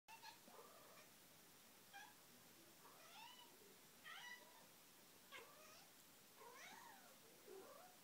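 A domestic cat meowing faintly and repeatedly, about eight short calls that rise and fall in pitch, roughly one a second.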